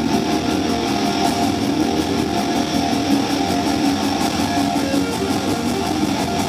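Live hard rock band playing an instrumental passage: electric guitar over a full drum kit, loud and steady throughout.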